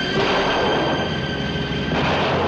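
Steady roar of aircraft engine noise with a high, even whine over it and a low hum, from an old film soundtrack.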